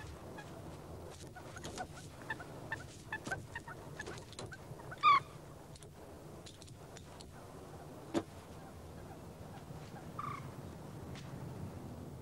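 A bird gives a short, loud, harsh call about five seconds in and a weaker one near ten seconds, over scattered small clicks. A single sharp knock comes about eight seconds in.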